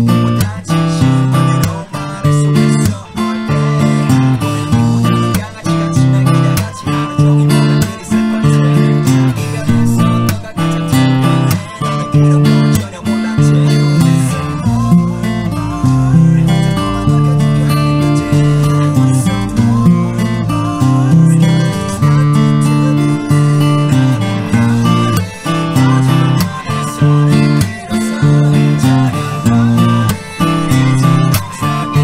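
Solo acoustic guitar strummed in a steady sixteenth-note rhythm, mixing palm-muted and percussive slap strokes, through a BbM7–Cadd9–Dm–Dm7/C chord progression at about 89 bpm.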